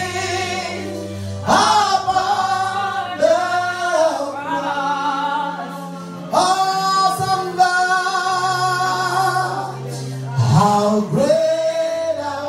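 Gospel worship singing: a man sings into a handheld microphone in long held phrases, over low sustained accompaniment notes that change pitch every few seconds.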